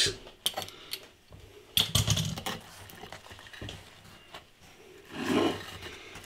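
Quiet handling of a plate of sliced pizza on a kitchen worktop: faint rubbing and scraping with a few light knocks, the loudest about two seconds in.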